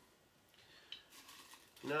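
Faint handling sounds of small spice jars: a few light clicks and rustles against quiet room tone.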